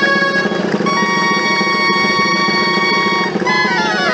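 Dulzainas (Riojan reed shawms) playing a dance tune in unison with a drum: long held notes, a change of note about a second in, then a quick descending run of notes near the end.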